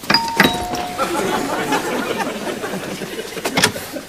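Two-tone doorbell chime, a single falling ding-dong right at the start, followed by a few seconds of noisy commotion.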